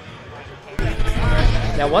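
Wind buffeting the microphone: a loud low rumble with thumps that starts suddenly about a second in, over a faint background of outdoor crowd.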